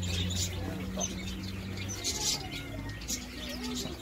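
Birds chirping and cooing, with short high chirps and a few lower calls, over a steady low hum that fades out about three seconds in.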